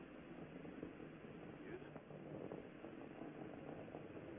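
Faint, steady hiss of a narrow-band radio commentary channel between callouts, with no clear speech.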